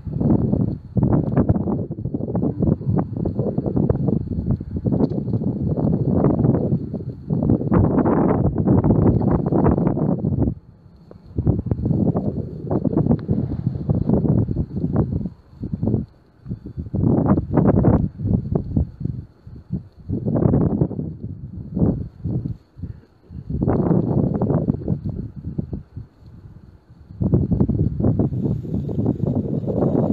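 Wind buffeting the microphone in gusts, with several brief lulls.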